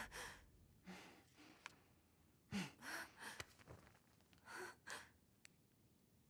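A woman's faint, short gasps and ragged breaths, several in a row, a few with a small catch of voice: the frightened breathing of someone who has just been held down by the face.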